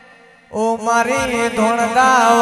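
Music: a held note fades away, then about half a second in, chant-like singing starts over a steady low drone.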